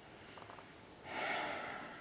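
A person breathing out heavily, starting about a second in and trailing off, with a few faint ticks shortly before it.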